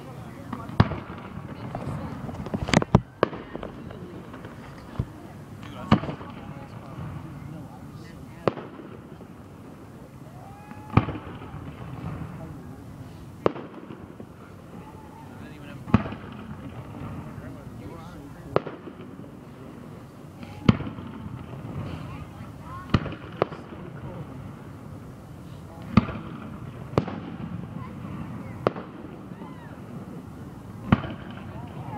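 Aerial firework shells bursting, a sharp boom every two to three seconds with some coming in quick pairs, over the murmur of a crowd of onlookers.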